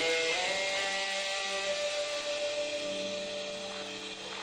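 Guitar playing a final note that rings on and slowly fades out, ending the blues piece.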